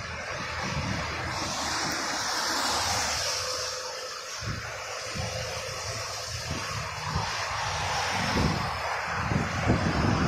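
Traffic passing on a wet multi-lane road, a steady roar of tyre hiss with one louder vehicle going by about two seconds in, and wind buffeting the microphone.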